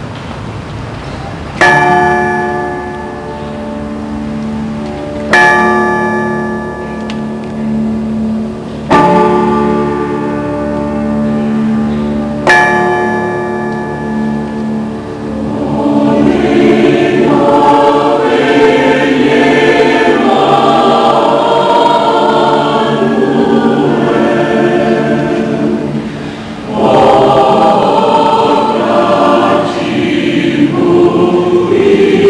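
Church choir singing a Christmas cantata with band accompaniment. It opens with four chords struck on a keyboard about three and a half seconds apart, each ringing out over a held low note. The choir comes in about halfway through, pauses briefly near the end, then sings on louder.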